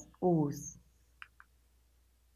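A woman's voice ends a word, then two small clicks come in quick succession a little over a second in: the buttons of a handheld presentation remote being pressed to advance the slide.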